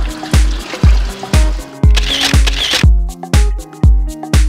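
Background dance music with a heavy kick drum about twice a second under sustained synth notes.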